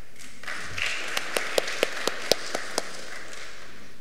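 Applause from a congregation after a sung solo, starting about half a second in, with several louder single claps standing out, dying away by about three seconds in.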